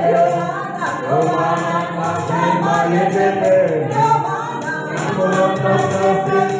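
Small mixed group of men and women singing a gospel song together without instruments, amplified through hand microphones, with hands clapping along.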